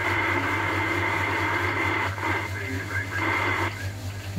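Yaesu FT-2900 VHF FM transceiver's speaker playing a received signal on a busy channel: a steady hiss with a muffled voice coming through in the second half, over a constant low hum.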